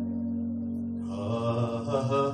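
Worship music with held keyboard chords, joined about a second in by a voice singing a long, wavering held line.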